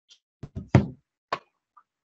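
A few short, sharp knocks, the loudest a little under a second in.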